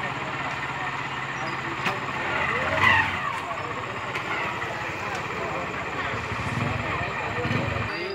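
Outdoor field ambience at a busy night-time temple festival: a steady din of mixed voices and background noise, with one voice standing out about three seconds in.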